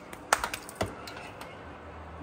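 Oven door being opened: a quick run of sharp clicks and knocks, two louder clunks about half a second apart, then a few lighter clicks.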